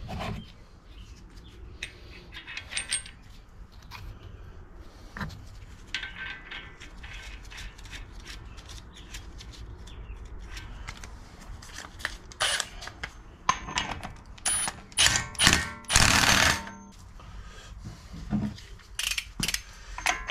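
Metal clinks, clicks and knocks from hand work on a Jeep's front wheel hub: the washer and axle nut going onto the spindle, and a socket and long torque wrench being fitted to the nut. The clatter grows busier and louder in the second half, with a longer rattling burst near the end.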